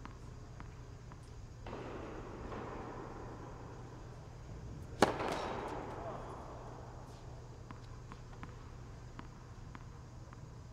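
A single sharp, loud tennis hit about halfway through, a ball struck hard, echoing in the indoor hall, with a few faint ticks around it.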